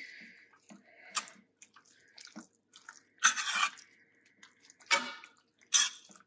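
A metal spoon stirring thick chickpea curry in a stainless steel saucepan: wet squelching and scraping strokes at an uneven pace, the loudest about three seconds in.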